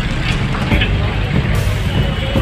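Street crowd chatter, with scattered overlapping voices over a loud, steady low rumble of street noise.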